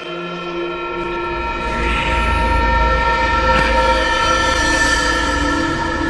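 Horror-film soundtrack: a sustained chord of steady, horn-like tones, joined about a second in by a deep rumble and swelling louder through the middle.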